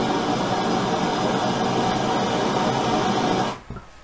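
Handheld gas torch burning with a steady rush, shut off suddenly about three and a half seconds in.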